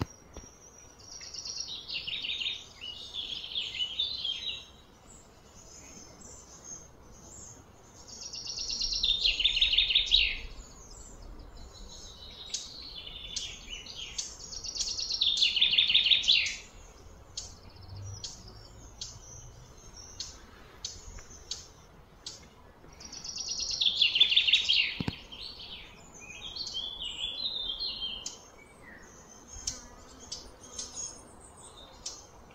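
High-pitched, buzzing animal calls outdoors: four loud phrases, each two to three seconds long and falling in pitch, come several seconds apart, with short softer chirps between them.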